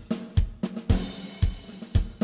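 Drum-kit beat opening a song: bass drum and snare strokes about four a second, with cymbal and hi-hat over them.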